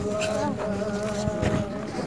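A group of voices singing or humming a slow hymn tune together, holding long steady notes.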